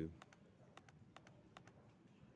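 Laptop keys pressed lightly several times, a string of faint, irregular clicks while the page is scrolled down.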